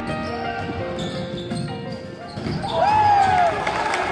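Live sound of a basketball game in a gym: a ball bouncing on the hardwood floor and voices, with a loud shout about three seconds in, while the backing music fades under it.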